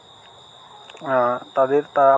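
A man's voice talking, starting about halfway through after a brief pause, over a faint steady high-pitched whine.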